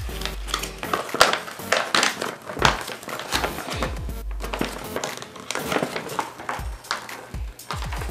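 Paper instruction manual rustling and crinkling as it is unfolded and handled, in irregular crackles, over background music.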